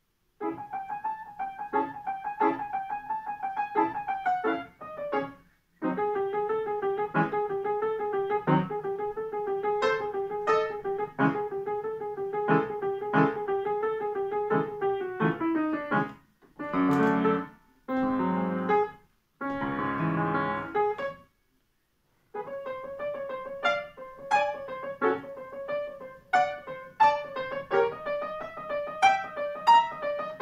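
Solo Estonia grand piano, played by a child: a lively piece of quick repeated note figures in the treble. It starts about half a second in after a silence, with several short breaks between phrases in the middle.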